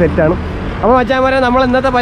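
A man talking, with a long drawn-out stretch of voice about a second in, over a steady low rumble.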